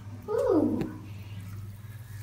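A person's short, drawn-out 'ooh' that slides down in pitch as a bath bomb is dropped into a tub of water. A steady low hum runs underneath.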